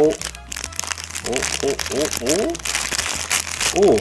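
Thin clear plastic bag crinkling and crackling as fingers squeeze and turn it around a small toy camera figurine.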